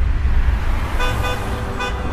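Street traffic: a deep, steady rumble of road traffic that starts suddenly, with three short car-horn toots, two close together about a second in and one near the end.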